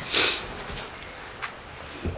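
A man's short, sharp intake of breath near the start, in a pause between spoken sentences, followed by faint steady room hiss.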